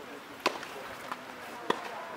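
Tennis rally on a clay court: two sharp tennis ball impacts about a second and a quarter apart.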